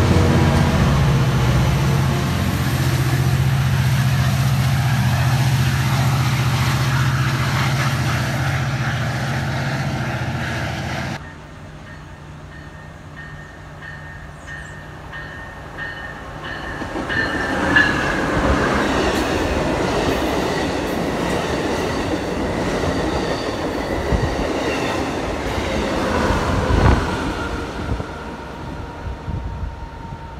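Metra bilevel commuter cars rolling past close by with a loud, steady low rumble of wheels on rail, which cuts off suddenly about eleven seconds in. After a quieter stretch, a Siemens Charger diesel locomotive's train approaches, growing louder from about seventeen seconds, with a few sharper knocks near the end.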